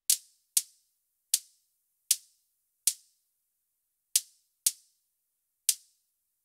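Soloed kick drum track of a metal mix heard through a high-pass filter set at about 10 kHz, so only thin, high clicks of its attack remain: eight short ticks in an uneven rhythm, with no body or low end.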